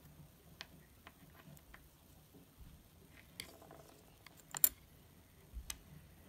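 Scattered light taps and clicks of a wooden popsicle stick and fingers working on a wooden tabletop, with one sharper click about two-thirds of the way through.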